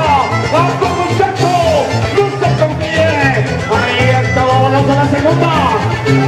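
Loud Latin-style music playing, with a steady repeating bass line under a melody that slides up and down.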